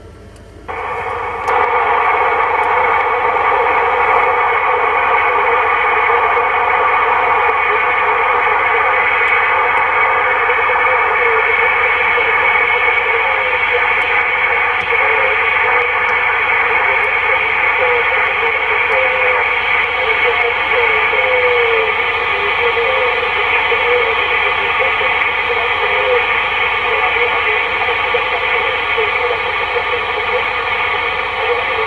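Steady band-limited hiss of band noise from a President Lincoln II+ CB transceiver receiving in upper sideband on 27.565 MHz, rising about a second in as the set drops out of transmit. Faint wavering tones drift through the hiss.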